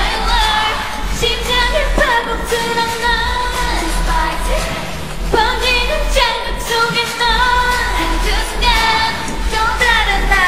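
K-pop girl group singing live with the instrumental backing track stripped out, so the pitched vocal lines stand mostly bare, with a steady low rumble of leftover bass underneath.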